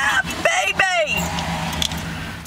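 Classic car's engine running low and steady as it rolls slowly, heard from inside the cabin. Voices exclaim briefly over it in the first second.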